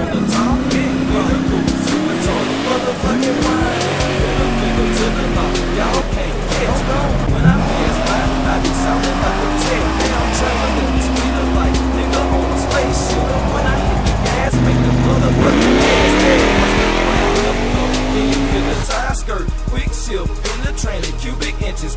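Street-car engines running up hard under drag-racing acceleration, rising sharply in pitch several times and then holding, with tire squeal, over hip-hop music with a steady bass.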